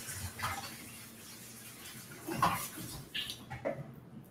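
Kitchen tap running as a blender jar is rinsed in the sink, with a few faint knocks of the jar; the water stops about three seconds in.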